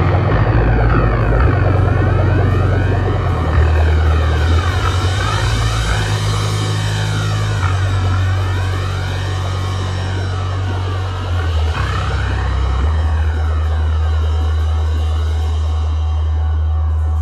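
Heavy stoner rock instrumental: held low bass notes under a tone that sweeps up and down about every two seconds, like a phaser or flanger effect.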